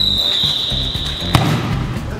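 A football kicked once with a sharp thud about a second and a half in, over background music with a steady beat. A high held tone that falls slightly cuts off right at the kick.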